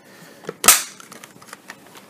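The plastic cyclone assembly of a Dyson DC65 Animal snapping into its clear dust bin: one sharp click about two-thirds of a second in, with a fainter tap just before it.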